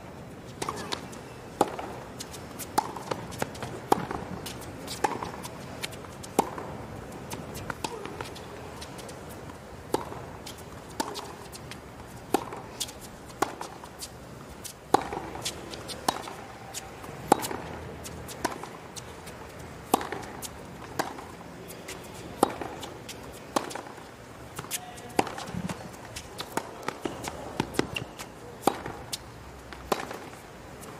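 Tennis ball struck back and forth by racquets in a long hard-court rally, about one hit every second or so, with softer ball bounces between the hits over a low crowd murmur.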